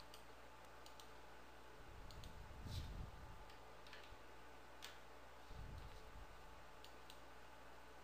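Faint, scattered clicks of a computer mouse and keyboard over near-silent room tone, with a couple of soft low thumps.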